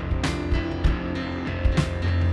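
Live worship band playing a song: guitar and bass notes with drum-kit hits and cymbal strokes.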